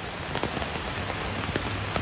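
Rain falling on leaves in the woods: a steady hiss with scattered sharp drop ticks.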